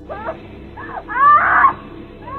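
A young woman screaming in pain: a few short wavering cries, the loudest about a second and a half in.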